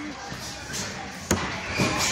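Gloved punches landing in boxing sparring: a sharp thud about two-thirds of the way in and a softer one near the end, over background voices.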